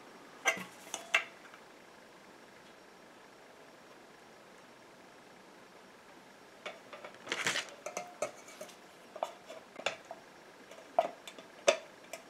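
Stainless-steel pots and a small metal bowl clinking and knocking together on a table as a pot is lifted and tipped over the bowl. There are a few light knocks at the start, then a quiet stretch, then a louder clank and scattered metallic clinks in the second half.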